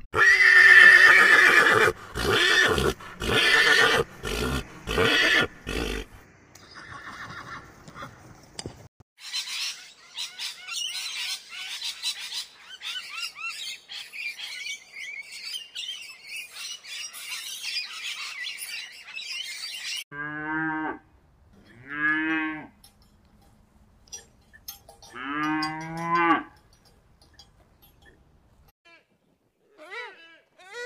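A run of different animal sounds. The first six seconds hold loud, harsh sounds in quick bursts, followed by a quieter stretch of high chattering. About two-thirds of the way in come three long, low mooing calls with a wavering pitch.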